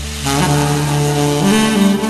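Tenor saxophone playing the melody over a karaoke backing track, held notes stepping upward in pitch.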